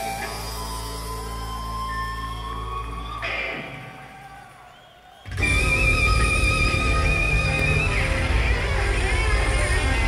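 Live instrumental rock with lead electric guitar from a Stratocaster-style guitar. A held guitar note rises slowly over the first few seconds. The band then drops away for about two seconds and comes back in loudly under a long, wavering high guitar note.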